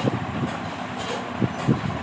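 Steady background noise, a low rumble with hiss, with a few faint low knocks and no speech.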